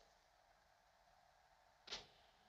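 Near silence, with one short, sharp knock near the end.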